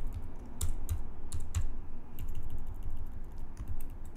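Typing on a computer keyboard: irregular keystrokes, several a second, while text is being edited.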